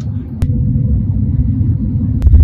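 Airliner cabin noise heard from a window seat during descent: a steady low rumble of the engines and airflow, with a faint steady hum above it. A sharp click comes about half a second in.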